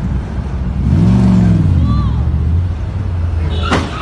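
A sports car's engine revving hard from about a second in, its pitch rising and then easing into a steady drone. Near the end comes a single sharp bang as the car strikes another car.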